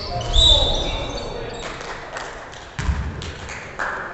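Basketball game on a wooden gym court: a brief high sneaker squeak about half a second in, then the ball bouncing on the hardwood with a thud about three seconds in and another near the end, all echoing in the gym.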